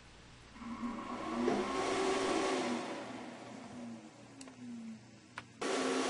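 Graphtec CE5000-60 vinyl cutter's carriage and feed motors whirring, the pitch sliding up and down as the head moves, after the cutter is taken off pause. Near the end, a short loud burst of noise.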